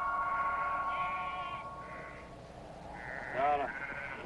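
A held synthesizer chord fades out over the first two seconds, then a sheep bleats once near the end.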